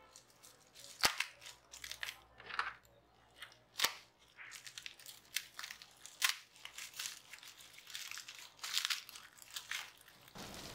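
Plastic bubble wrap crinkling and rustling in irregular bursts as it is handled and cut open by hand. Two sharp snaps stand out, about a second in and near four seconds.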